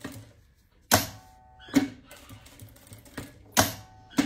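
Sewing machine run in short, slow spurts: a handful of separate sharp clacks, with a faint motor whine between some of them.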